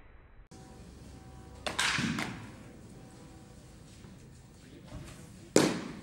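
Two sharp pops of pitched baseballs smacking into a catcher's mitt, about four seconds apart, each echoing briefly in a large indoor hall; the second is louder.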